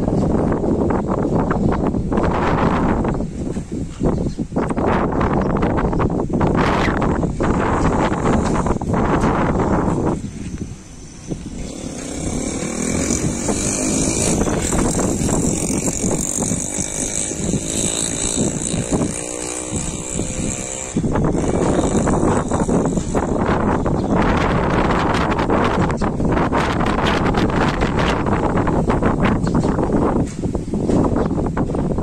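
Strong storm wind gusting across the microphone in loud, rumbling buffets, easing for a stretch in the middle before picking up again.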